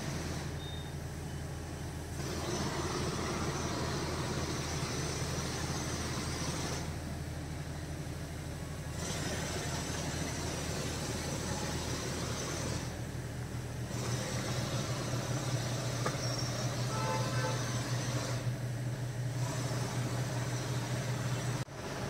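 A steady low hum under an even hiss, with no speech. The hiss drops away briefly a few times.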